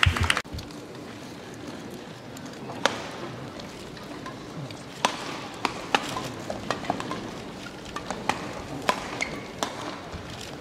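Badminton rally: rackets striking the shuttlecock in sharp cracks at irregular intervals, with short squeaks of shoes on the court and a steady hall background. A brief loud burst right at the start.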